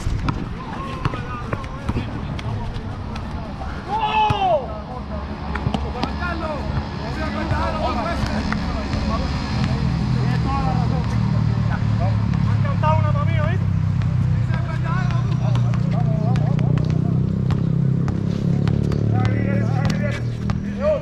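Pickup basketball on a concrete court: players' scattered shouts and calls, with sharp knocks of the ball bouncing. A low, steady engine hum from a vehicle grows louder in the second half.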